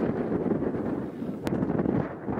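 Wind buffeting the microphone outdoors, a dense irregular rumbling noise, with one sharp click about a second and a half in.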